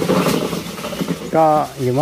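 People talking, with a man's voice speaking clearly and loudly from a little past halfway through.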